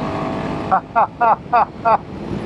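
Royal Enfield Himalayan 452's single-cylinder engine running steadily under way, then a man laughing in five short bursts over the engine noise.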